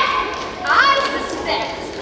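A woman speaking in a theatrical, declaiming voice, her pitch sweeping sharply upward about two-thirds of a second in.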